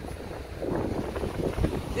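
Wind buffeting the phone's microphone as a low, uneven rumble, over the wash of ocean surf.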